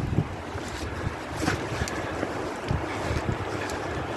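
Wind buffeting a handheld camera's microphone: an uneven low rumble with a few faint clicks.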